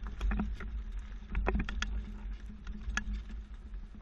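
Swagman XC2 platform hitch bike rack and the mountain bike on it giving irregular light clicks and knocks over a low vehicle rumble, as the SUV rolls over alternating speed bumps that twist the rack.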